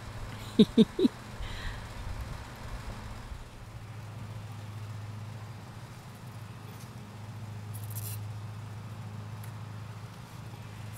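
A steady low hum with faint background noise, after three short, voice-like sounds near the start.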